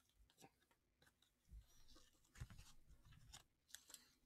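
Near silence, with a few faint scattered clicks and soft thumps of handling.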